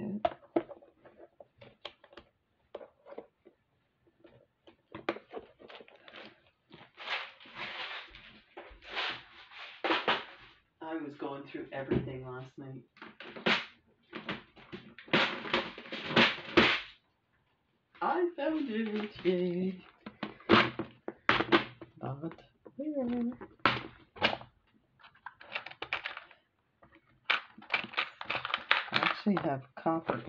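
Clear plastic bead-organizer boxes being handled and rummaged through: lids clicking and thunking, and small metal charms clattering and rattling in their compartments, in a run of short bursts.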